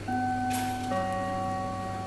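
Airport public-address chime: two sustained bell-like notes, the second one lower, ringing on together. It is the attention signal that precedes a flight announcement.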